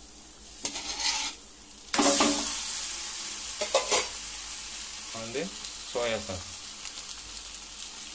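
Boiled pasta tipped into a hot kadai of fried onion-tomato masala: about two seconds in it hits the pan with a sudden loud sizzle that slowly dies down, with scrapes of a metal perforated skimmer against the aluminium pan.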